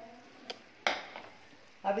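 A nonstick frying pan set down on a granite countertop: a small click, then one sharper knock just under a second in.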